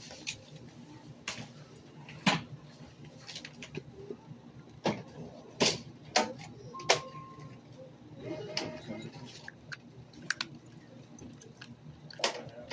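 Checkout counter handling noise: scattered clicks and knocks of items and bags being handled, with one short electronic beep about seven seconds in.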